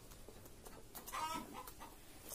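A chicken clucking faintly, one short call a little after a second in, with a few faint clicks.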